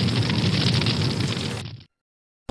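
An explosion's drawn-out blast, a deep crackling rumble that fades away and cuts off shortly before the end.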